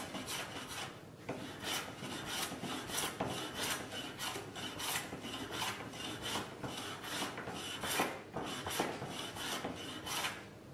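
Small metal hand plane cutting sapele (African mahogany) in short, quick strokes, each a brief rasping hiss of the blade taking a shaving, about two to three strokes a second.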